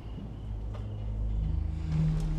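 A low rumbling drone that swells in loudness, with a steady low hum coming in at about the halfway point.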